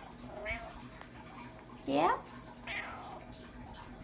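Domestic cat meowing: a faint short call, then a louder meow about two seconds in that rises in pitch, followed by a falling call.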